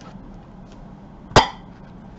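A single sharp knock of a hard object, with a brief ringing tail, about one and a half seconds in.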